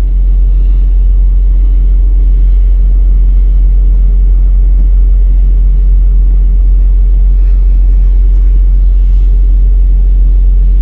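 Ship's diesel engines droning steadily, a deep constant rumble with a steady hum over it, heard from the deck of a bulk carrier under way.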